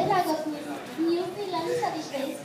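Many children's voices talking over one another, with one loud voice right at the start.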